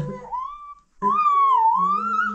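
A toddler's high-pitched squeal that rises, breaks off for a moment, then wavers down and back up, with a man's low voice held beneath it.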